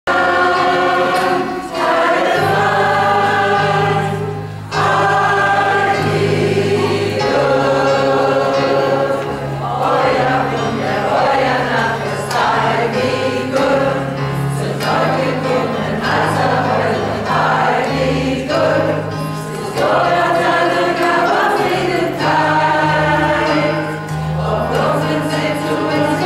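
A mixed chorus of men and women singing a song together, over a steady low accompaniment whose notes change every second or two.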